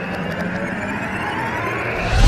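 Intro sound effect: a loud, steady whooshing rush like a passing jet, with a slowly rising tone, building toward a hit.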